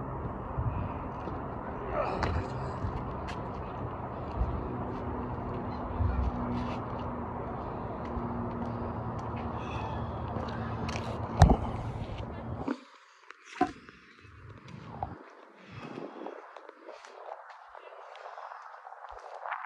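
Steady outdoor background rumble with faint distant voices. About eleven and a half seconds in, a sharp knock as the filming phone is grabbed, after which the rumble cuts out and only quieter, uneven handling noise is left while the phone is carried.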